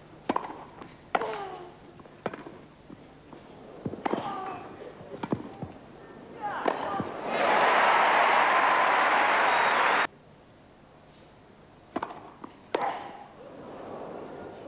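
Tennis ball being struck by racket strings in a rally on a grass court: single sharp hits about a second apart, with a few short voice calls among them. Then a loud burst of crowd applause about seven seconds in that cuts off abruptly after a couple of seconds, and two more ball hits near the end.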